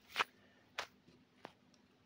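Small screw-lidded bait jars being handled and set down in a cardboard box: three sharp light clicks, a little over half a second apart, the first the loudest.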